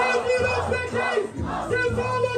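Crowd at a freestyle rap battle shouting and cheering in reaction to an MC's verse, with the battle beat's looping melody playing underneath.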